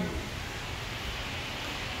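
Steady outdoor background hiss with no distinct sounds, no clicks and no rhythm.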